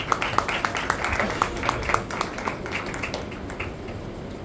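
Scattered audience applause: many hands clapping irregularly, thinning out near the end.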